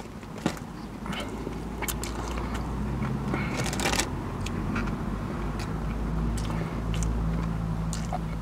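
A man chewing a mouthful of battered fish with his mouth closed: scattered small wet mouth clicks and smacks. A low rumble rises beneath them from about a second in.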